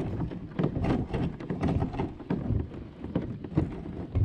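Loaded kayak being hauled over a gravel road strewn with dry leaves: an irregular run of crunches, knocks and rattles with a low rumble as it jolts along.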